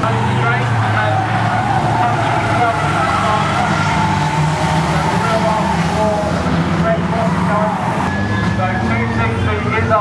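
Several banger racing cars' engines running together as they race round the track, with a steady engine drone and no clear single pass-by.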